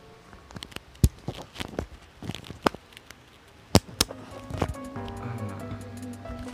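Plastic cap of a new, unopened e-liquid bottle being twisted off, giving a handful of sharp plastic clicks and cracks over several seconds. Background music comes up in the last second or so.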